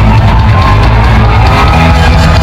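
Surf rock band playing loud and live, guitars over bass and drums, recorded from within the crowd at near full-scale level, with shouts from the audience mixed in.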